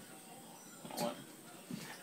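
Quiet room tone with a single short spoken word about a second in.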